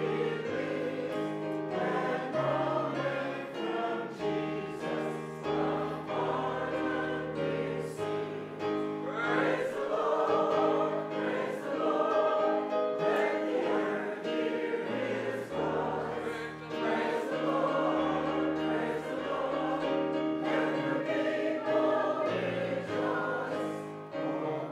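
Congregation singing a slow hymn together with keyboard accompaniment, held bass notes changing every second or two under the voices.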